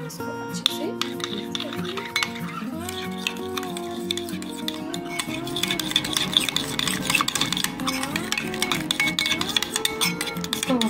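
Background music with a gliding melody, over a metal spoon clicking and scraping as it stirs a thick sauce in a bowl; the spoon sounds come thicker in the second half.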